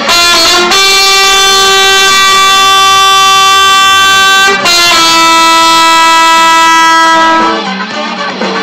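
Trumpet played loud and close: a short note, then two long held notes of about four and three seconds, the second a little lower, stopping near the end.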